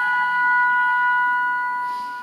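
A flute and a clarinet hold two long high notes together in a chamber-ensemble piece. The notes fade gradually and stop just before the end.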